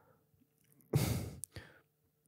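A man's single sigh, a short breathy exhale close to a handheld microphone, about a second in, ending in a faint click.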